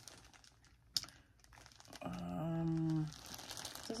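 Crinkling and rustling of a yarn ball's packaging and label as it is turned in the hands, with a sharp click about a second in. A drawn-out, steady hummed "hmm" runs for about a second in the middle while the label is read.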